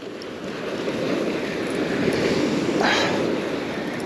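Small surf waves breaking and washing up a sandy beach, a steady rushing wash that swells and eases over a few seconds.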